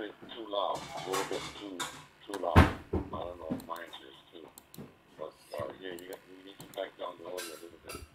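Another station's voice coming in over DMR digital voice through laptop speakers: thin, telephone-like speech, the reply to a call for an audio check, telling the caller his transmit audio is too loud. A single thump about two and a half seconds in.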